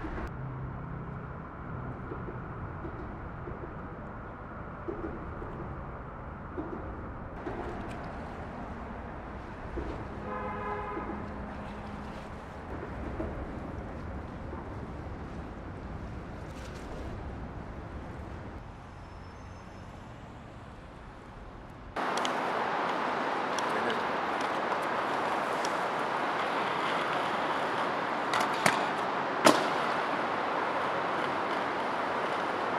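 Low, steady city traffic rumble, with a horn sounding once for about two seconds partway through. About 22 s in it cuts abruptly to a louder steady hiss, with a few sharp clacks near the end.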